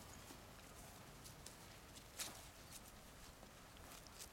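Near silence, with faint scattered rustles and ticks of small footsteps in grass and dry leaves, and one slightly louder tick about two seconds in.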